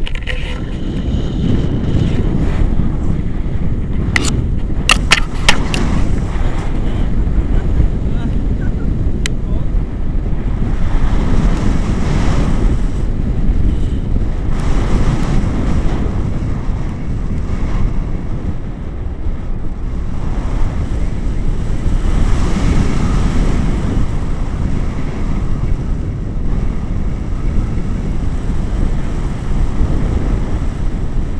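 Airflow buffeting the camera's microphone in paraglider flight: a loud, steady rumble that swells and fades, with a few sharp clicks about four to six seconds in.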